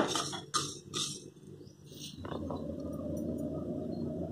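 A spatula stirring and scraping dry seeds around a nonstick kadai, with a few short scrapes in the first second. A steady low hum follows for the rest.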